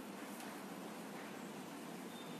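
Quiet room tone: a steady faint hiss, with one faint tick about half a second in.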